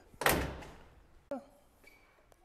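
A pickup truck door, a Nissan D21 Hardbody's, slammed shut once, loud, with a short ring dying away, followed about a second later by a faint click.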